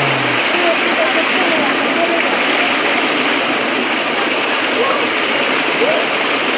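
Steady rush of a small waterfall splashing into a pond, with faint voices of people in the background.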